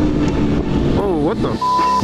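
Motorcycle engines running during a group ride, a short exclamation about a second in, then a steady high beep near the end: a censor bleep covering a swear word.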